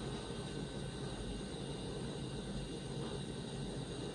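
Steady low background hiss with a faint hum: room tone, with nothing else happening.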